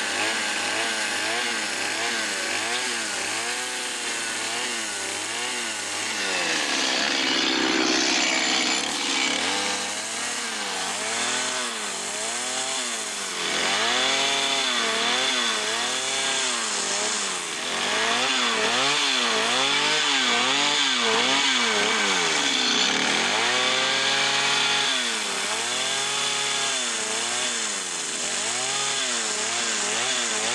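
Chainsaw carving wood, its engine revving up and down over and over, about once a second, as the carver works the saw.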